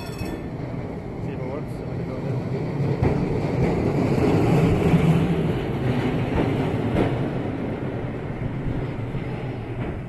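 Electric trolley-pole tram passing on rails: its running noise swells to a peak about halfway through and then fades, with a sharp click about three seconds in and another near seven seconds.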